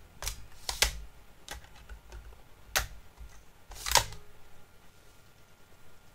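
Optical drive tray being opened, a blank CD set onto its spindle and the tray pushed shut: a handful of sharp plastic clicks and knocks over the first four seconds, the loudest about four seconds in.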